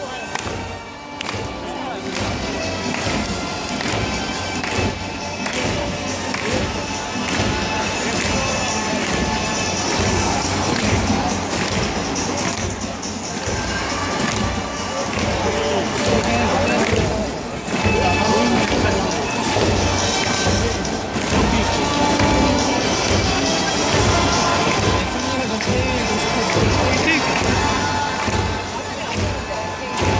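Music with a steady, evenly repeating beat playing over a baseball stadium's loudspeakers, mixed with the voices of a large crowd in the stands.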